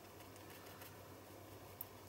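Near silence: room tone with a faint steady low hum and a single faint click near the end.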